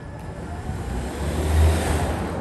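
A car driving past at close range, its engine and tyre noise swelling to a peak near the end and then easing off.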